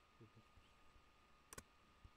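Near silence with a brief faint vocal sound early on, then one sharp double click about one and a half seconds in.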